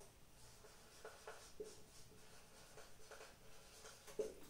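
Faint marker pen writing on a whiteboard, a series of short strokes.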